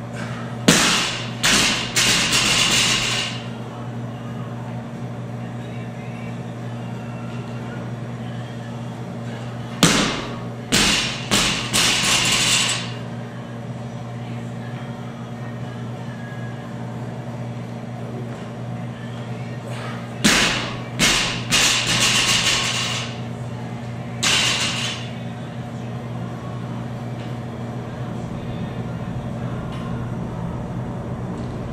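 A loaded barbell is dropped from overhead onto the gym floor three times, about ten seconds apart. Each drop is a loud first bang, then a few smaller, quicker bounces as the plates rattle and ring on the bar. A single lighter knock comes later, over a steady low hum.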